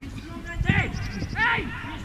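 Footballers' short shouted calls to each other across an open pitch, several separate shouts in two seconds.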